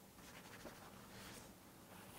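Faint scratching of a drawing tool on paper: quick sketching strokes on an easel pad.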